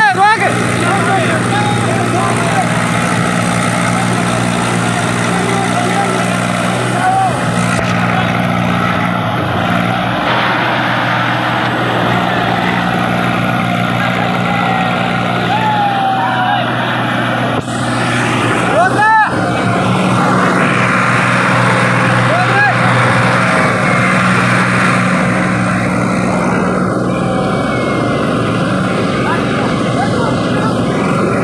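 Two small tractor diesel engines running hard and steady under load as they pull against each other in a tug-of-war, with people's voices shouting over them.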